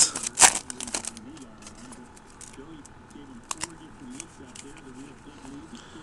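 Foil trading-card pack wrapper crinkling and crackling as the cards are pulled out of it, loudest in the first second, with one sharp click a few seconds later.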